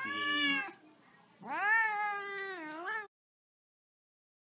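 Tabby cat meowing twice: a short meow, then a longer one that wavers and dips in pitch before the sound cuts off abruptly about three seconds in.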